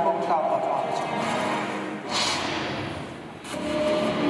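A film's soundtrack playing over a theatre's speakers: a man's voice from the film at first, then a burst of noise about two seconds in that fades away before the next scene's music and voice come in.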